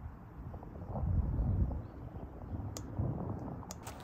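Low, distant rumble of a jet airliner passing high overhead, swelling and easing, with a couple of faint clicks near the end.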